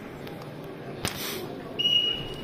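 A short, steady, high-pitched signal tone of about half a second near the end, which signals the start of the bout's second period. A single sharp clap or slap sounds about a second in, over a low arena hubbub.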